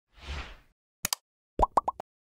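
Animated like-button sound effects: a soft whoosh, a quick double click like a computer mouse, then three rapid pops rising in pitch, which are the loudest part.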